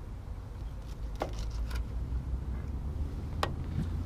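A steady low rumble of wind on the microphone, with three short sharp taps of a knife on a bait board as gizzard shad is cut into chunks for catfish bait.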